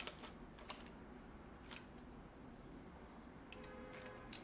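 Polaroid SX-70 instant camera being handled and fired: a few faint clicks, then a faint short motor whir near the end as it cycles with nothing ejected, because the film cartridge has been slit so the pick arm pushes nothing out.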